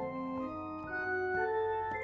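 Keyboard with an organ-like tone playing an ascending diminished arpeggio, the octave split into four equal minor-third steps on C, E♭, F♯ and A. A new note comes in about every half second while the earlier ones keep sounding beneath it.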